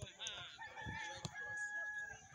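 A rooster crowing: one long drawn-out call starting about half a second in, with a sharp knock about midway through.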